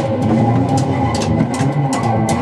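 A young child hitting a drum kit with sticks, a few uneven strikes over loud rock music with guitar.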